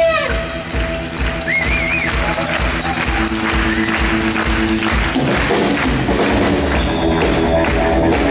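Live rock band playing, with a drum kit keeping a steady beat under electric guitars and saxophone. A held saxophone note falls away in pitch at the start.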